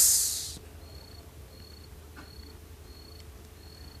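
A cricket chirping faintly and steadily, short high chirps about twice a second, over a low hum.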